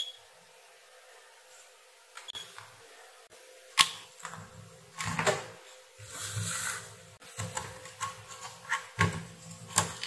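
Bench handling noise: irregular clicks and rustling as test probes and leads are moved and multimeter buttons pressed, with one sharp click about four seconds in and a few more near the end, over a faint steady hum.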